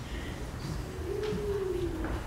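Quiet room noise of a gathered crowd, with one held, slightly falling hum-like voice sound in the second half, lasting under a second.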